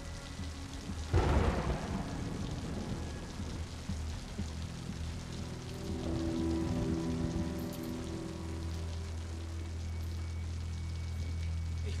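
Steady rain falling, with a rumble of thunder about a second in, under a low, sustained music score.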